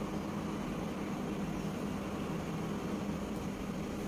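Steady background hum with an even hiss and no distinct events: the constant drone of a room, like a fan or air conditioner running.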